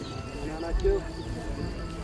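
A lull between loud outdoor men's voices: only faint murmur and low background rumble, with one brief weak voice sound about a second in.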